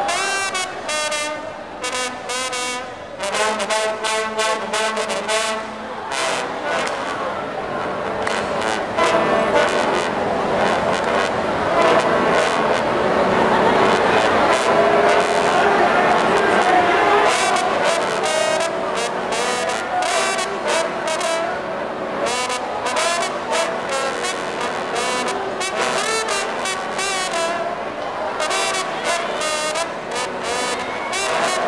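A trombone section of eight trombones playing together in a marching-band style: clipped short notes at first, then long held chords that swell in the middle, then a run of quick, short rhythmic notes.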